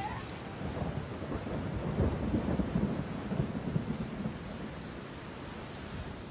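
Water rushing and sloshing, muffled, with an irregular low rumble, as heard by a camera held at the surface of a canyon pool.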